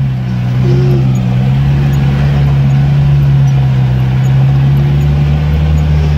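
UAZ off-roader's 2.4-litre engine running steadily under load, pulling through deep mud in four-wheel drive with one low range engaged, heard from inside the cab; it gets a little louder about a second and a half in.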